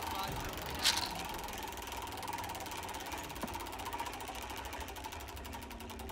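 Roulette wheel spinning, its ball ticking over the frets in a fast, even run of clicks, with one sharp click about a second in.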